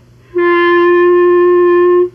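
Clarinet playing one long, steady held note, starting about a third of a second in.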